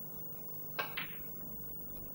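Two sharp clicks about a fifth of a second apart, a little under a second in: a snooker cue tip striking the cue ball, then the cue ball striking an object ball.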